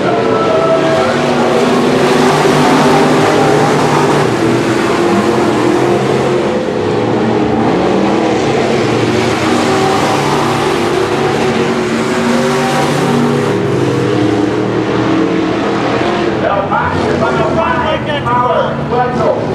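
Several IMCA Sportmod dirt-track race cars' V8 engines running at speed around the oval, their overlapping engine notes rising and falling as the cars pass and lift through the turns. A voice comes in near the end.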